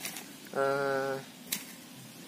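A man's voice holding a drawn-out hesitation sound on one steady pitch for under a second, a little after the start. Two short clicks, one at the very start and a sharper one about a second and a half in.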